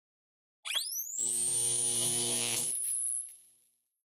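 Short intro music sting for an animated logo: a quick rising sweep, then a held chord with a high thin tone above it, fading out about three seconds in.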